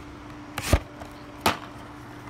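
Plastic DVD case knocking as it is handled, twice: a short scrape ending in a knock just over half a second in, then a sharper knock about a second later, over a faint steady hum.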